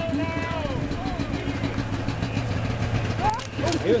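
Pickup truck engine running with a low steady rumble as a police truck passes in a parade, with people's voices over it.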